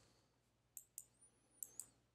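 Near silence broken by four faint computer mouse clicks, in two pairs: one pair a little under a second in and another about three quarters of the way through.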